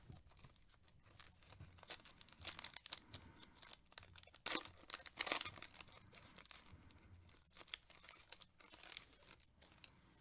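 A trading-card pack wrapper being torn open and crinkled by hand: an irregular run of faint crackling rips, loudest about halfway through.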